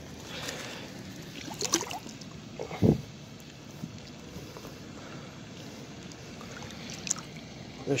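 Faint water sloshing and splashing as a largemouth bass is held by the lip in shallow pond water and released, with one low thump about three seconds in.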